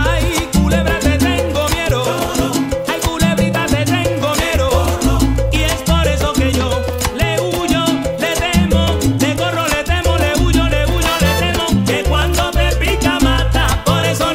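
A salsa band playing, with a repeating bass line under constant percussion from congas and timbales.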